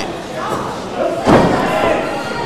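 A single heavy thud of a wrestler's impact in the ring, a little over a second in, with a short ring of hall reverberation after it.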